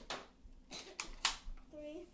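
A few sharp clicks and knocks, one at the start and a quick cluster about a second in, the loudest of them near the middle. A child says a brief word at the end.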